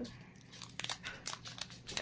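Foil booster-pack wrapper crinkling in the hands with irregular short crackles as it is pulled open.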